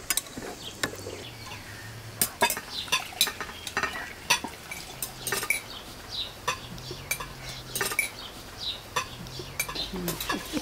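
Metal spoons clinking and scraping against ceramic bowls and a glass jar while food is served, in irregular sharp clinks.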